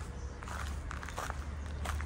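Footsteps of someone walking, a few uneven steps about half a second to a second apart, over a steady low rumble.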